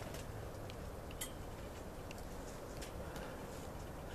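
Faint handling sounds of potting soil being worked by hand as a rooted papyrus cutting is set into its pot and the soil firmed around it: a few light clicks and scrapes over a steady low hiss.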